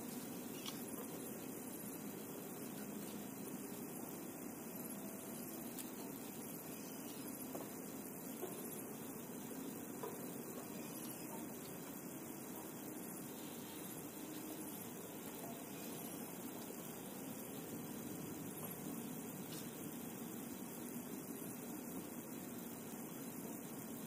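Steady background noise, an even hiss and low hum without distinct events.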